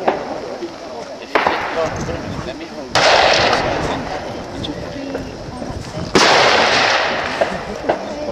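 Three rifle shots from elsewhere along the firing line, about one and a half, three and six seconds in. Each is a sudden crack followed by a long echoing decay, and the last two are the loudest.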